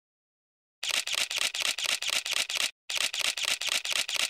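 Camera shutters clicking in rapid bursts, about eight clicks a second. They start just under a second in and pause briefly after about two and a half seconds.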